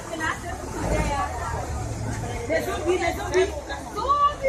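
Background voices of market vendors and shoppers talking and chattering, over a steady low rumble.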